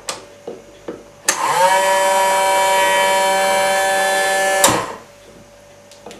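Car windscreen-washer pump running under power for about three and a half seconds: a steady whir that rises briefly in pitch as the motor spins up, then cuts off suddenly. It is pumping liquid out through its hose now that the air in the line has been cleared. A few light clicks come just before it starts.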